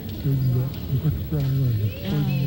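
A man's voice singing an Iñupiaq song in long held notes that fall in pitch at their ends, with short breaks between phrases, on an old cassette recording.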